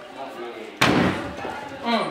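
A single loud slam a little under a second in, fading out over about half a second.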